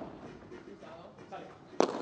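Low, steady arena background, then a single sharp crack of a padel ball being hit near the end.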